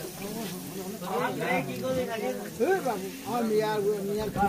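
Batter-coated potato chops (aloo chop) sizzling as they deep-fry in a large wok of hot oil, with someone talking over the frying.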